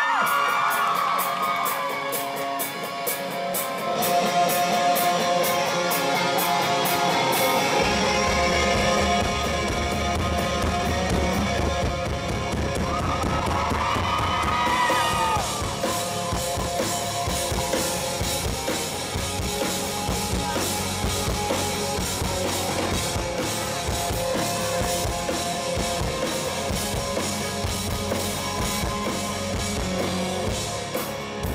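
Live rock band playing a song's intro on electric guitars and drums. The low end fills in fully about eight seconds in.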